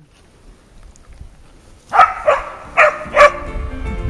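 English springer spaniel barking four times in quick succession, the barks about half a second apart, starting about halfway through.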